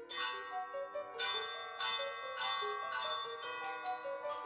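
Wind-ensemble percussion section playing bright, ringing metal mallet-percussion notes, glockenspiel-like, over held tones. The notes enter sharply at the start and are struck roughly every half second, each ringing on.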